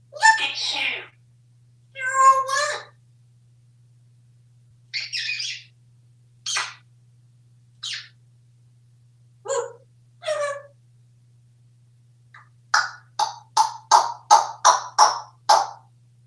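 African grey parrot vocalizing: a string of separate short calls and talk-like mimicry, then near the end a quick run of about ten short repeated notes, roughly three a second.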